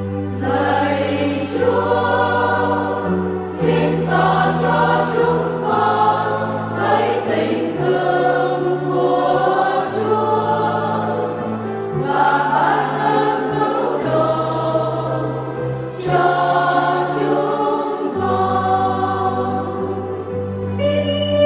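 A church choir singing a Vietnamese Catholic responsorial psalm setting with instrumental accompaniment, its held bass notes changing every two seconds or so.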